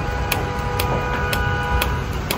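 Gas station fuel pump filling a car's tank: a steady hum of several tones over a low rumble, with a faint tick about twice a second. The hum stops a little before the end.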